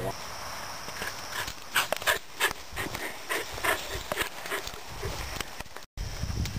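A run of irregular light clicks and knocks with no steady rhythm, cutting to silence for a moment near the end.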